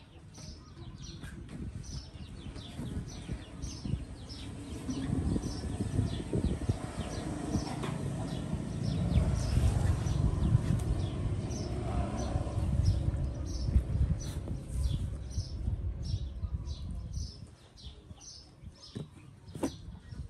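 A steady series of short high chirps, about two a second, over low rustling and rumbling close to the microphone that swells and is loudest through the middle.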